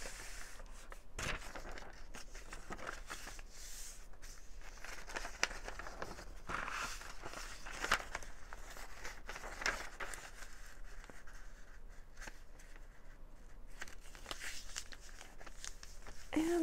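Paper rustling and crinkling as a printed page is folded and pressed flat by hand, with a few short taps scattered through.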